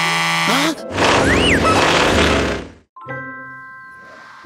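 Cartoon sound effects: a held buzzy tone, then a loud noisy swoosh lasting about two seconds with a whistle sliding up and back down, cut off abruptly. Soft background music begins near the end.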